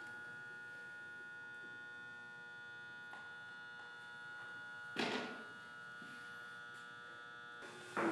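A steady buzzing hum with many evenly spaced pitched overtones. A brief burst of noise comes about five seconds in.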